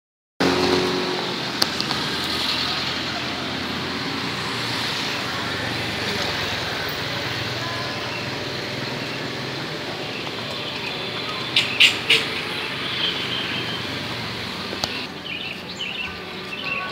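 Steady road traffic noise. A few short, sharp high clicks come about twelve seconds in.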